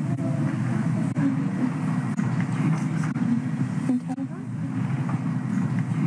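Indistinct low murmur of voices and room rumble, with a few faint, brief voice sounds.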